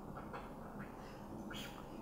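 Faint scratching and squeaking of a marker pen writing on paper, a few short strokes over low room tone.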